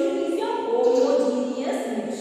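Many voices chanting together in unison, in sustained, sing-song phrases.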